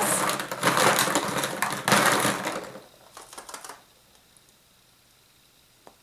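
Plastic surprise eggs clattering against each other and a plastic bowl as a hand rummages through them for about three seconds, then a few lighter clicks, and a single faint click near the end.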